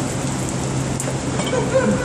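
Water spattering and dripping from a leaking overhead plastic pipe onto plastic sheeting and a wet concrete floor, over a steady low hum.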